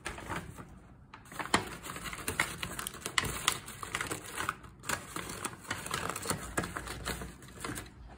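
Paper takeout bag crinkling and rustling as it is handled and set down on a doormat, a run of many quick, irregular crackles.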